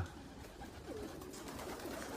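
Faint cooing of racing pigeons over low, steady background noise, with one soft call about a second in.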